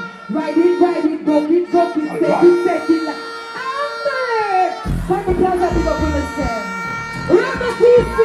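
Female dancehall vocalist deejaying into a microphone through a live PA over sustained backing tones; a heavy bass-driven riddim comes in suddenly about five seconds in.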